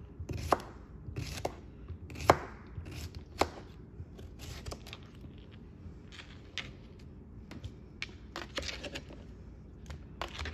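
Knife chopping an English cucumber into half-moons on a plastic cutting board: four sharp knocks about a second apart, then fainter, irregular knocks and taps.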